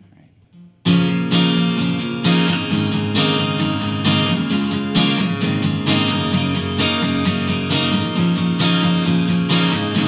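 Steel-string acoustic guitar starting suddenly about a second in, strummed chords in a steady rhythm: the instrumental opening of a solo acoustic song.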